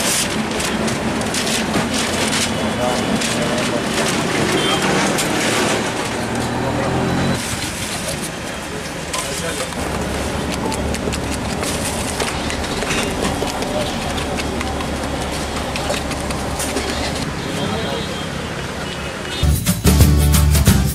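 Busy street-food stall: background voices over a dense bed of small crackling clicks, with a low steady hum through the middle part. Music starts just before the end.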